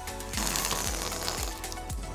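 Background music with a steady beat. About half a second in, air rushes out of a released balloon rocket with a hiss for about a second as it shoots along its string.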